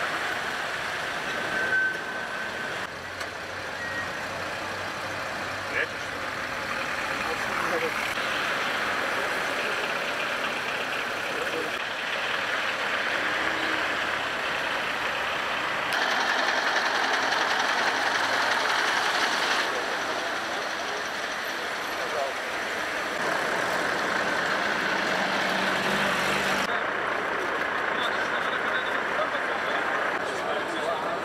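Street ambience of traffic and vehicle engines mixed with indistinct voices, its character changing abruptly several times as the shots change.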